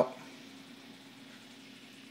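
Faint steady trickle of water from an aquarium's filter outflow, with a low steady hum underneath.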